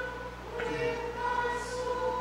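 A congregation singing a hymn together, with long held notes.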